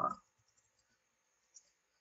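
Near silence after a word trails off, with one faint short click about one and a half seconds in.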